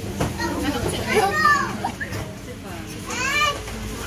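Children's high-pitched voices calling out twice, each call rising and falling in pitch, over background chatter.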